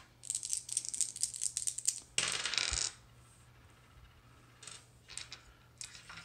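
Three six-sided dice rattling and clattering as they are rolled: a rapid run of clicks for about two seconds, a short rush as they tumble across the table, then a few light clicks near the end.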